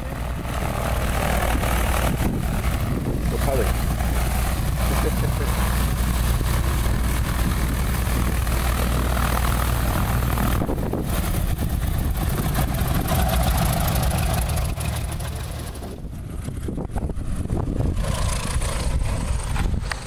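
Single-engine light aircraft's piston engine and propeller running steadily close by as the plane taxis. The sound drops away about sixteen seconds in, then builds again near the end.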